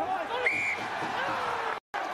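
Voices calling out over a rugby ruck, with a short, steady referee's whistle blast about half a second in. The sound cuts out for a split second near the end.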